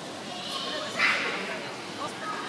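A child's short high-pitched squeal about halfway through, over the steady hubbub of voices in a busy indoor play area.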